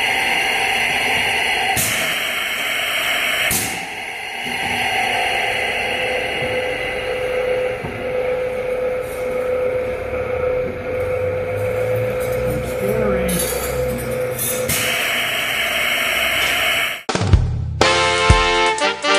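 Grotens 1LS weld planisher running: its electric gear motor hums with a steady tone while the rollers work a steel strip, and the grinding noise cuts out and comes back sharply a few times as the rollers engage and release. Swing music with accordion starts about a second before the end.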